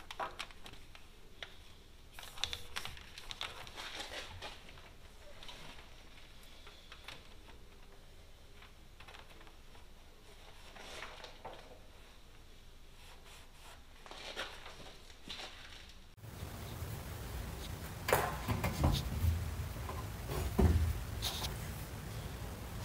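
Hand work on a truck chassis: scattered light clicks, rattles and knocks as air lines are handled and routed. About sixteen seconds in, the sound turns louder and boomier, with a few heavier knocks near the end.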